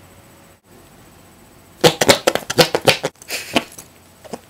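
Camera handling noise: after a quiet hiss, a rapid, irregular flurry of loud clicks and knocks starts about halfway through as the camera is grabbed and bumped.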